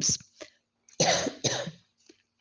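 A woman coughing twice, two short coughs about half a second apart.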